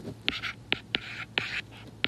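A stylus writing on a tablet screen: several sharp taps with short scratchy strokes between them, as numbers are handwritten.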